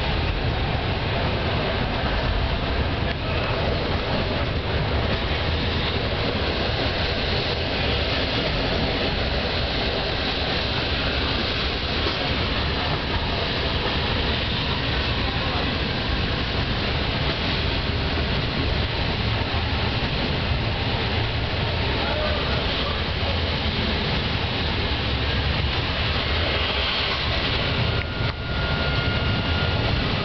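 Steady rumble and rush of a local passenger train running along the track, heard from inside the carriage.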